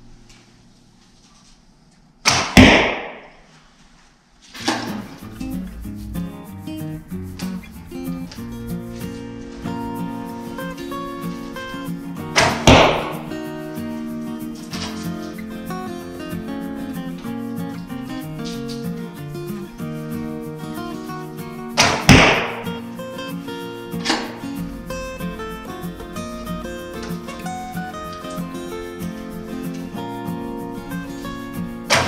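A horse bow of about thirty pounds draw weight (an Alibow) is shot three times, about ten seconds apart. Each release is a sharp, loud snap, followed about two seconds later by a fainter knock. Background music plays under it from about four seconds in.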